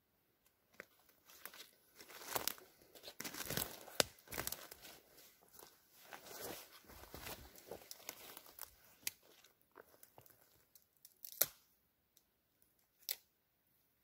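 Footsteps through forest undergrowth: leaves, brush and twigs crackling and crunching underfoot in an uneven run, thinning out after about eleven seconds to two sharp isolated snaps.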